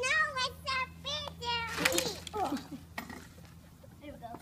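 A young child's high-pitched voice giving a string of short wordless exclamations, thickest in the first two seconds and trailing off by about three seconds in.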